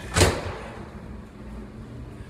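Over-the-range microwave door latch clunking once, a single sharp knock, followed by quiet room noise.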